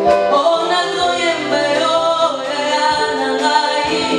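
A woman singing a worship song through a microphone and sound system, with long held and gliding notes over instrumental accompaniment.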